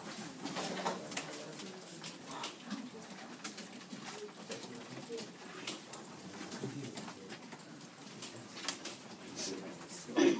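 Classroom room sound: laptop keys clicking irregularly as students type, over faint low voices.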